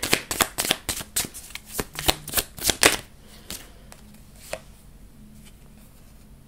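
A deck of tarot cards being shuffled by hand: a quick run of riffling snaps and flicks for about three seconds, then quiet apart from two soft taps.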